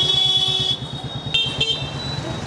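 A high-pitched vehicle horn sounding, held until under a second in, then a second short toot about a second and a half in, over the low rumble of street traffic.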